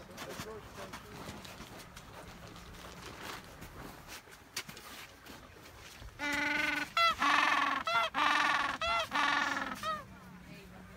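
Gentoo penguin giving its ecstatic display call: a loud, braying call that starts about six seconds in and comes in five or six pulses, each a little over half a second, after a stretch of faint background sound.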